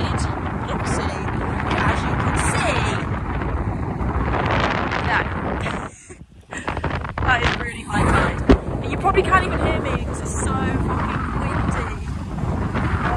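Gusty wind buffeting the microphone, dropping out briefly about halfway through, with a sharp knock a couple of seconds later.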